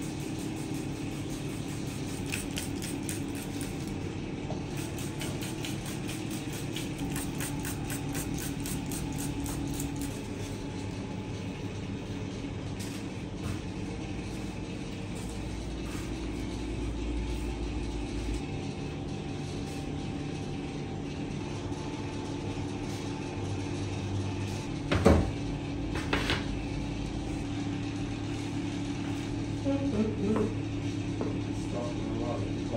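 A steady machine hum runs throughout. A quick run of light ticks over the first ten seconds matches seeds being shaken from a container onto dough in bowls, and two sharp clinks of clay bowls come a little before the end.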